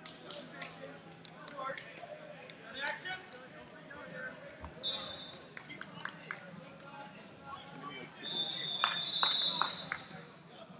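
Wrestlers grappling on a rubber mat: scattered thuds and slaps of bodies hitting the mat, with background voices in the hall. A short high whistle blast sounds about halfway through and a longer one near the end, where the impacts are loudest.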